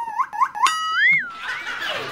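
Cartoon-style sliding-pitch sound effects: a falling tone, a few quick blips, then a held tone that swoops up and back down about a second in.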